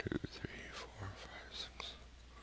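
A man whispering under his breath, with a few soft clicks near the start.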